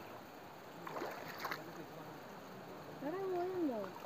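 Stones thrown by hand splashing into a shallow river, two short splashes about a second in, over the faint steady sound of the water. Near the end a child's voice gives one drawn-out call that rises and falls.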